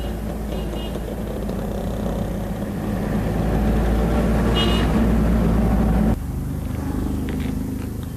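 A van's engine and tyres on a road come closer and grow louder, peaking about five to six seconds in. The sound then cuts off abruptly and gives way to a quieter, steady engine hum.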